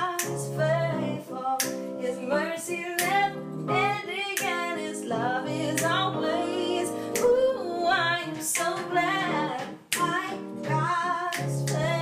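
Voice-memo demo recording of a song being played back: a woman singing a slow melody over guitar chords.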